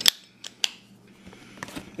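A few sharp metallic clicks and clacks of hand tools being handled in a canvas tool bag, the loudest right at the start.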